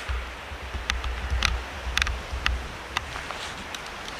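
Wind buffeting a hand-held camera's microphone as a low rumble, heaviest in the first half, while the person holding it walks. A scatter of light, irregular clicks runs through it.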